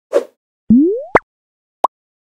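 Cartoon-style sound effects for an animated logo. There is a short pop, then a rising whistle-like glide that ends in a sharp pop, and a brief blip near the end.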